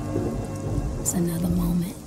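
Rain and rolling thunder sound effect in the intro of a slowed-down R&B track, with a low held tone at about a second in.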